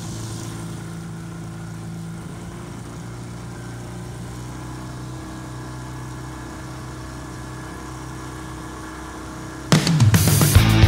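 Small outboard motor running steadily at speed, its pitch dropping slightly about three seconds in. Loud rock music cuts in near the end.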